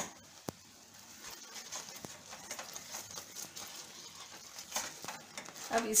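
Milk, sugar and mawa mixture with ghee bubbling and crackling in a nonstick pan, with a spoon stirring it and one sharp click about half a second in.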